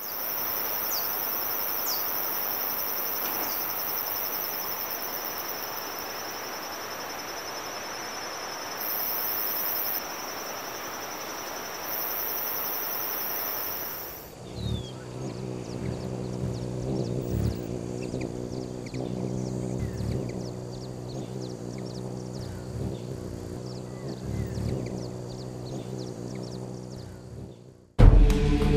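Tropical forest ambience: a steady hiss of background noise with a continuous high insect drone, an even higher buzz and a few short bird chirps. About halfway the sound cuts to a quieter forest bed with a low steady hum, occasional soft knocks and scattered faint bird calls.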